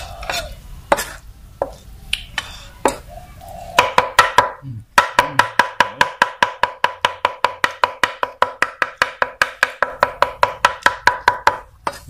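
Heavy cleaver mincing raw beef for larb on a thick round wooden chopping block: a few scattered chops, then from about four seconds in a fast, steady run of about five chops a second, each with a ringing tone from the blade, stopping just before the end.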